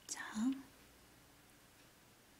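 A brief breathy vocal sound from a woman, a whispered breath ending in a short low hum, lasting about half a second right at the start; after it only faint room tone.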